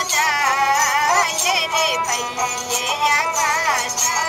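Ravanahatha, the Rajasthani bowed stick fiddle, playing a busy, ornamented folk melody with sliding, wavering notes.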